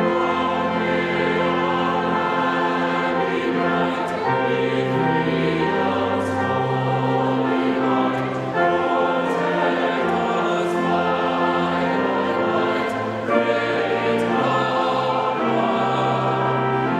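Choir singing a hymn in sustained, slow-moving chords over organ accompaniment, with the bass notes stepping from chord to chord.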